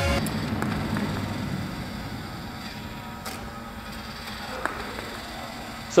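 Small badminton shuttle feeding machine running in a sports hall: a steady motor hum that fades somewhat over the first few seconds, with a single click about three seconds in.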